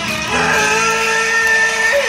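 Live rock band over a concert PA, the singer holding one long, steady note that starts about half a second in.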